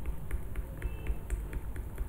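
Plastic pen stylus tapping on a Wacom One graphics tablet as short strokes are drawn one after another: a quick, even run of light clicks, about five a second.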